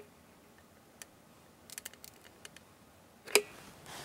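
Quiet handling of a squeeze tube of construction adhesive while a bead is laid on foam board: a few faint ticks and clicks, then one sharp click a little over three seconds in.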